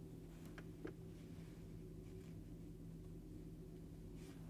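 Quiet room tone with a steady low hum. Two faint clicks come under a second in, followed by soft rustling as a yarn needle and yarn are worked through plush chenille yarn.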